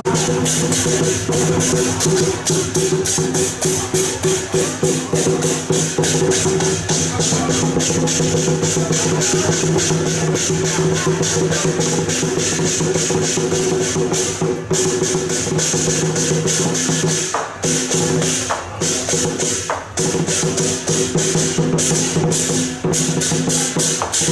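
Lion dance percussion band playing: rapid, dense drum and cymbal strikes over steady ringing gong tones, with two short breaks about three-quarters of the way through.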